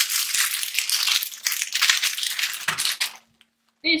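Clear plastic packaging bags crinkling and rustling as they are handled and a hair bundle is pulled out, stopping about three seconds in.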